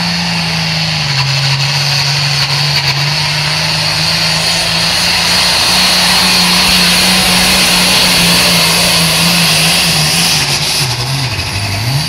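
International 1066 tractor's turbocharged six-cylinder diesel running flat out under heavy load while pulling a sled, a loud, steady engine note that wavers and dips in pitch near the end.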